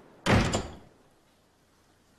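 A door shutting hard: one heavy thud about a quarter of a second in, dying away within half a second.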